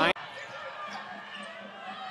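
Faint ambience of an indoor basketball arena, with a weak low hum partway through. A commentator's voice cuts off abruptly at the very start.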